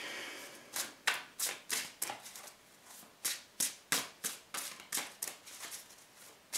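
Tarot deck being shuffled by hand: a run of short, crisp card slaps, about three a second, with a brief pause about two and a half seconds in.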